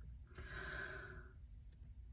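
A woman's breath close to the microphone, starting about a third of a second in and lasting about a second, over a faint steady low hum.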